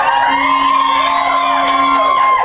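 Recorded stage music playing, with audience members whooping and cheering over it: a rising whoop that holds as a long call.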